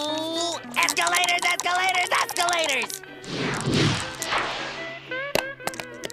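Cartoon soundtrack over a dice roll. Music and strained, wavering voice sounds come first. A long breathy whoosh falls in pitch in the middle, the dice being blown on and thrown, and a few sharp clicks near the end as the dice land and clatter on the board.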